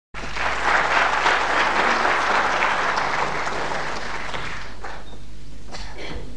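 Audience applauding, dying away about three-quarters of the way through, followed by a few faint knocks near the end.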